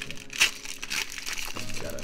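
Foil wrapper of a Pokémon TCG booster pack crinkling as it is torn open and pulled apart, with a sharp crackle about half a second in.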